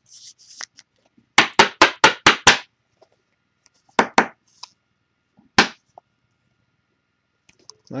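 Sharp taps and knocks from trading cards and foil packs being handled on a tabletop: a quick run of about six taps, then two close together and one more, after a brief rustle at the start.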